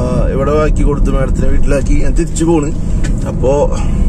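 A man talking inside a car cabin, over the car's steady low rumble.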